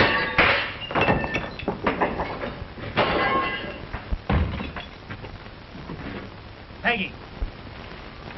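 A quick run of knocks and crashes with raised voices. It eases after about four seconds into a quieter hiss, and a short pitched cry comes near the end.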